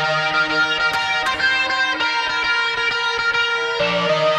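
Isolated electric guitar and bass tracks from an instrumental section of a rock song, with layered sustained guitar lines over a steady bass. Two brief sharp accents come about a second in.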